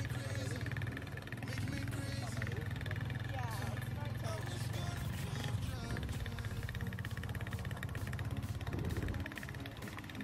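Small motorcycle's engine running steadily at cruising speed as it carries a passenger along a dirt track, a low even hum that eases off about nine seconds in.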